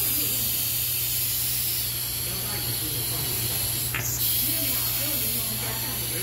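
Steady compressed-air hiss from a GISON GP-SA20-60 pneumatic vacuum suction lifter running while its suction cup holds a steel weight, with a brief sharp change in the hiss about four seconds in.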